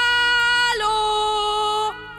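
A voice singing two long held notes, the second a little lower, to try out the cave's echo. A faint echo tail trails off after the second note.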